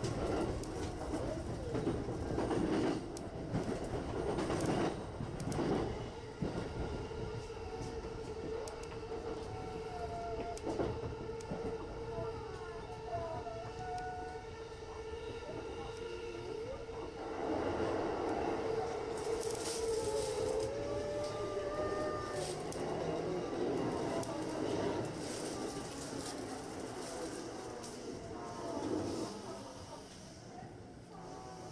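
A JR Chuo Line commuter train heard from on board as it runs into a station: wheels clacking over rail joints and points in the first few seconds, then a steady running hum with wavering squeals from the wheels on the curving track. The sound eases off near the end as the train slows alongside the platform.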